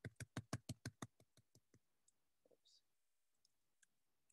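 Computer keyboard keys clicking while code is typed: a quick run of about eight keystrokes in the first second, then a few scattered single taps.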